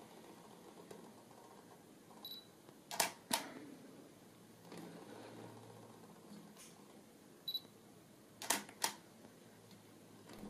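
Canon 70D DSLR autofocusing with a Sigma 105 mm macro lens, twice: a short high focus-confirmation beep, then the shutter firing with a quick double click.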